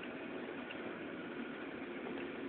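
Steady car engine and road noise heard from inside the cabin while driving.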